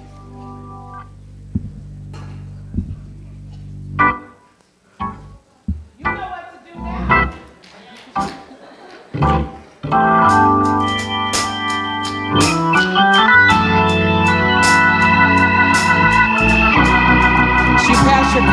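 Organ playing: soft held chords at first, then a few scattered notes, then louder, fuller playing from about ten seconds in.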